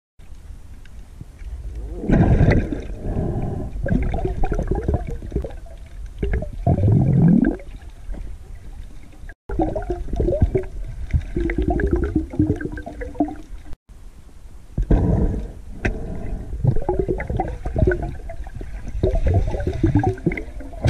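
Water gurgling and sloshing in repeated surges, heard from a camera underwater, with two brief dropouts where the sound cuts out for an instant.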